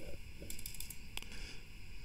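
Quiet room noise with one faint, sharp click from computer use a little over a second in.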